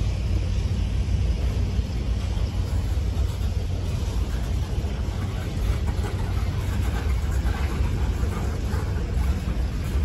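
Freight train cars, covered hoppers and then tank cars, rolling past on the rails: a steady low rumble with a few faint wheel clicks in the second half.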